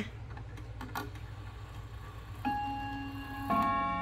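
Wuba mini mantel clock's Schatz movement sounding its half-hour ping-pong strike: a hammer hits one gong about two and a half seconds in, then a second hammer hits a differently pitched gong a second later, both notes ringing on. A faint click comes first.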